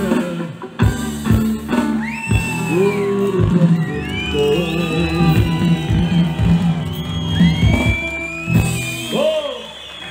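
Live band music played over a PA, with a steady drum beat under sustained melody notes, and shouts and whoops from a crowd over it.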